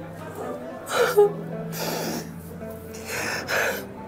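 A young woman crying: a short voiced sob about a second in, then breathy, gasping sobs, over soft sustained background music.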